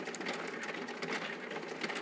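Faint, steady clicking rattle of mahjong tiles, typical of an automatic mahjong table's shuffling mechanism working under the tabletop during play.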